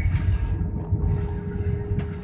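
Airliner cabin noise during the landing roll-out on the runway: a steady low rumble with a faint steady hum.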